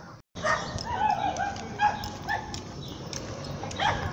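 A dog whining and yipping in a few short, high, wavering calls, after a brief dropout in the sound near the start.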